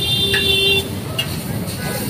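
Metal spatula scraping and clinking against a large iron tawa as fried noodles are turned on a street-food griddle, with a sharp clink about a second in. Street traffic noise runs underneath, with a brief vehicle horn near the start.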